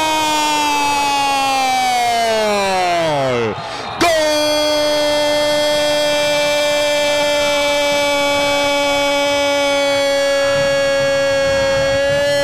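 A radio football commentator's drawn-out shout of 'gol' for a goal just scored: a long note that slides down in pitch, a quick breath about three and a half seconds in, then a second note held steady for about eight seconds that starts to fall at the end.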